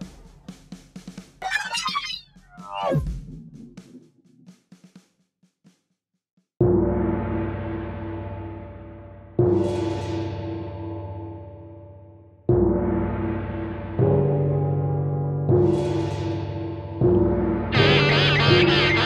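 Sci-fi effects of clicks and sweeping whistles ending in a falling swoop, then after a short silence an electric guitar through an EarthQuaker Devices Aqueduct vibrato pedal: chords struck about six times, each ringing out and fading with a steady wavering.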